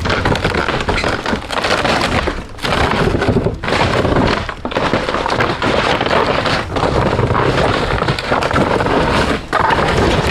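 An old wooden boathouse and its cedar shake roof cracking, splintering and crushing as it is broken into rubble: a loud, continuous run of breaking wood with a few brief lulls.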